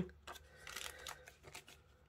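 Faint, scattered rustling and crinkling of cellophane stamp packets and a clear stamp being handled, mostly in the first second and fading out after.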